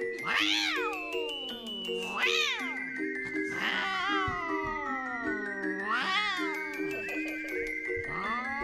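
A domestic cat meowing four times, each long call rising sharply then sliding down in pitch, over background music with a steady repeating melody.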